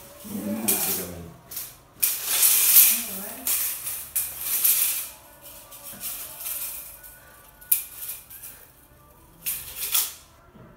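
Retractable tape measure having its tape pulled out and wound back in, a rattling whir in several bursts, with one sharp click later on.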